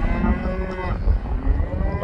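Cattle mooing: one long moo lasting about a second, over a steady low rumble.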